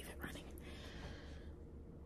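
A faint whispered voice, breathy and without pitch, lasting about a second, over a steady low hum of room tone.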